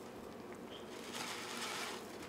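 Faint simmering hiss from a pot of broccoli steaming on the stove, a little stronger in the second half.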